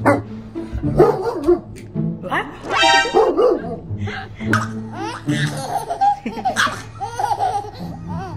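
Laughter and a baby's high squeals and babbling, over background music with a steady low bass line.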